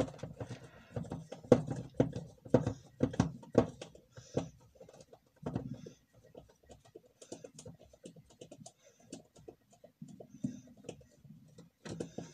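Irregular small clicks and taps of a screwdriver and screws against the plastic cell holder of a lithium-ion scooter battery pack as its side screws are worked out. The taps are busier and louder in the first few seconds and sparser and fainter after.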